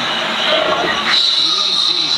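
Velociraptor costume giving a shrill, drawn-out screech that starts about a second in and lasts nearly a second, over crowd chatter.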